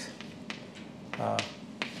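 Chalk tapping on a blackboard while writing: a few sharp clicks, about a second apart and then two close together near the end. A brief murmur of voice comes in between.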